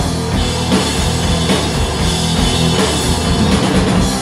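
Live rock band playing an instrumental passage: electric guitar and drum kit, with no singing.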